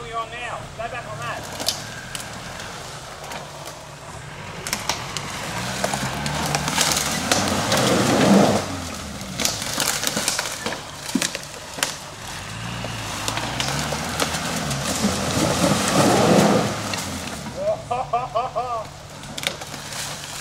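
Suzuki Sierra 4x4 engine revving up twice as the vehicle works through a slippery, leaf-covered gully, with a scrabbling, crackling noise of tyres and debris under the wheels.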